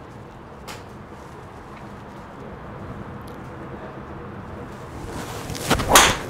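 Quiet range ambience, then near the end the rising swish of a golf driver swing and a sharp crack as the Ping G430 LST's titanium head strikes the ball off the tee.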